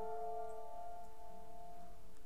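Virtual piano chord from the Creepy Piano plugin ('Coffin Rot' preset) sustaining and slowly fading, with no new notes struck.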